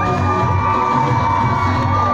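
Loud dance music with a heavy bass beat, with a crowd of children and adults cheering and shouting over it.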